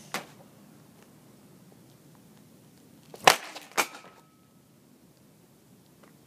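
Hockey stick slapshot on pavement: one loud sharp crack about three seconds in, then a second, weaker crack half a second later.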